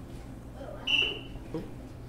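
A single short, loud, high-pitched whistle at one steady pitch, about a second in, lasting under half a second.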